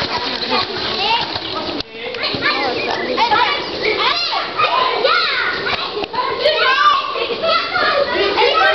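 Several young voices chattering over one another, with no clear words, and a brief sudden drop just before two seconds in.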